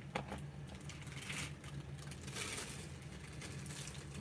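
Faint handling sounds from corks being tried in the opening of a small ceramic shaker: a few light clicks at the start, then soft rustling, over a steady low hum.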